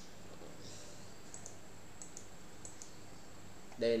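Faint computer clicks in three quick pairs, about half a second apart, over a steady low hum and hiss.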